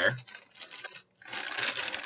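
Packaging around a bundle of greeting cards rustling and crinkling as it is handled, louder in the second half after a brief gap about a second in.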